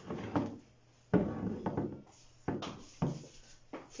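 A sharp thump about a second in, then a few lighter knocks, as a painted lion figure is handled and lifted off a work table.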